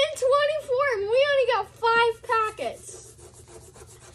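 Children squealing and vocalising excitedly in high, wavering voices, in several bursts over about two and a half seconds, then faint rubbing.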